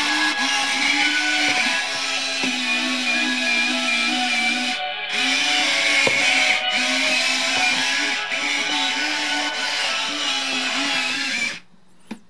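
A large remote-control Robocar Poli transforming toy plays a melody through its built-in speaker while it runs its automatic transforming mode. The tune stops abruptly near the end.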